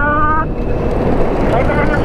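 Wind rushing over the camera microphone and tyre noise while riding an electric bike, with a man's voice briefly at the start and again near the end.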